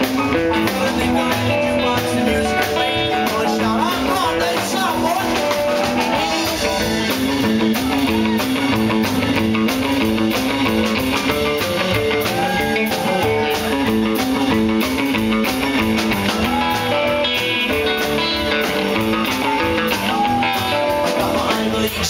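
Live rock and roll band playing: drum kit, upright bass, keyboard and guitars, with electric guitar prominent and some bent notes.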